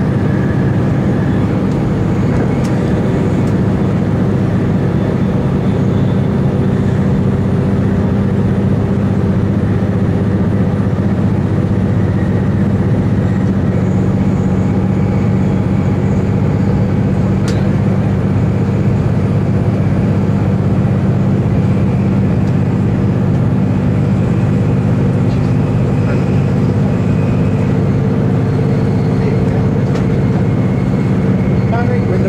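Steady interior running noise of a VLocity diesel multiple unit travelling at speed: a constant low drone, with one faint click a little past halfway.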